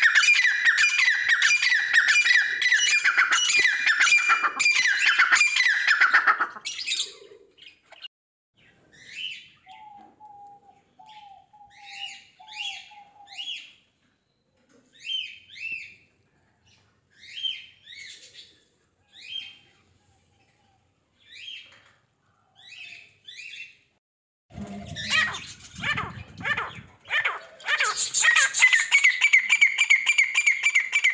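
Small birds chirping and squawking: a dense chatter of many birds for about the first six seconds, then scattered short high chirps with a brief run of lower calls, and dense chatter again from about 25 s on.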